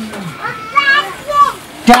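Speech only: short utterances from men's voices, with a sharp click near the end.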